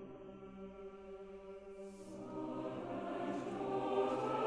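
Mixed chorus with orchestra singing soft, sustained chords in a hushed passage. It swells louder from about two seconds in.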